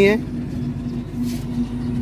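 A motor vehicle's engine running with a steady low hum, briefly dropping out about a second in.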